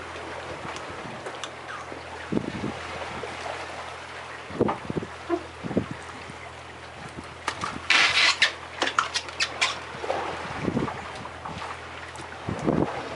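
Steady low hum of a boat idling at sea, under wind and water noise, with scattered light clicks and knocks and a brief loud burst of noise about eight seconds in.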